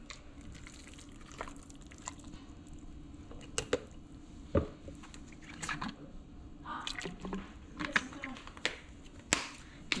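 Wooden spoon mashing and stirring boiled potatoes with cream in a stainless steel bowl: wet squishing with scattered knocks of the spoon against the bowl.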